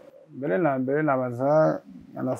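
A man's voice speaking in long, drawn-out syllables.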